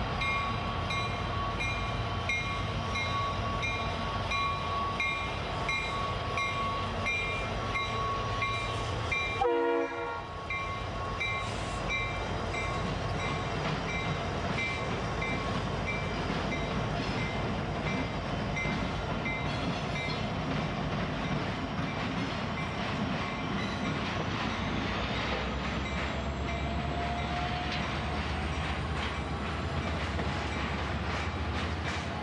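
Union Pacific freight train with SD60M diesel locomotives passing close by, a bell ringing about twice a second in the first third. The steady rumble and clatter of the passing train is followed by trailers on flatcars, with a slow rising whine and heavier low rumble near the end.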